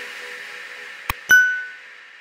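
The tail of the outro music fading, then a short click about a second in and, just after it, a bright bell-like ding sound effect that rings briefly and dies away.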